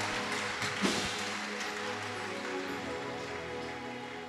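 A congregation clapping over held background music chords, the clapping slowly dying down.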